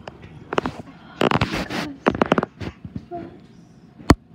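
Clicks, knocks and rustling from a phone being handled and moved about over bedding, with short bursts of noise that are probably a child's voice or breath close to the microphone.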